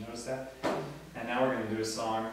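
A man speaking, with one sharp knock a little past half a second in.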